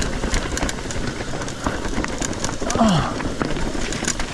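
Trek Fuel EX 7 full-suspension mountain bike rolling over a rocky trail: tyre noise on rock under a steady clatter of many small knocks and rattles from chain and frame.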